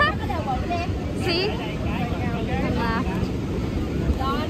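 Several people's voices talking on a busy beach, some of them high-pitched, over a steady low rumble.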